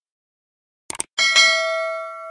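Subscribe-button sound effect: a quick double mouse click about a second in, then a bright notification-bell ding that rings on and slowly fades.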